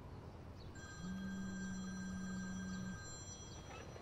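A mobile phone's incoming call: a steady low buzz held for about two seconds, with faint high steady tones around it.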